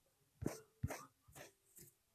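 Four short, sharp sounds about half a second apart.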